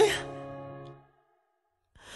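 The last held sung note of a pop song dips in pitch and stops, and its reverb tail fades away within about a second, leaving silence. A breathy sigh starts right at the end as the next track begins.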